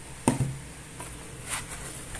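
Handling noises as a plastic power-tool battery pack is set down and the packaging is reached into: a sharp knock about a quarter second in, a light click, then a brief scrape or rustle near the end.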